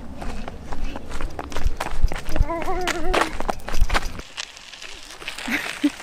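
Running footsteps on a paved path, heard through a rumble of camera handling while the person filming runs. A voice calls out briefly in the middle. The running sound stops abruptly about four seconds in.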